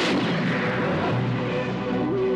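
Film battle gunfire: a sharp blast right at the start, followed by continuing noisy battle din, mixed with the film's music score.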